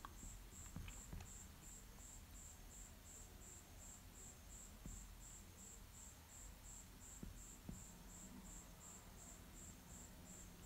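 Near silence: a faint high-pitched chirp repeating evenly about four times a second, with a few soft taps.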